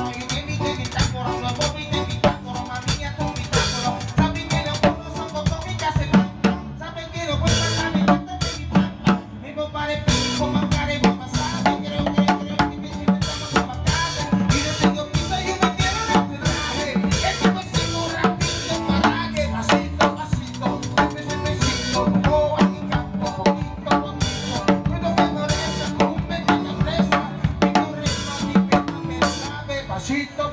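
Drum kit played live with a band: a continuous groove of drum and cymbal strikes, with a bass guitar underneath.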